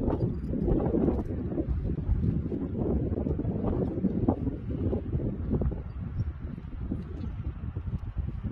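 Wind buffeting a phone's microphone outdoors: a steady, uneven low rumble.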